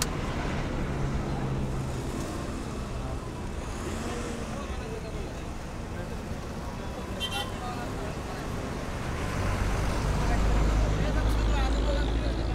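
Murmur of many men talking at once outdoors, with no single voice standing out. A brief high beep sounds about seven seconds in, and a low rumble swells up in the last few seconds.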